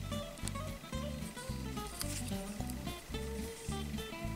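Quiet background music: a melody of short, separate notes at changing pitches over a low bass line.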